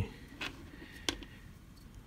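Two light clicks of small objects being handled and set down on a tabletop, the second sharper than the first, over quiet room noise.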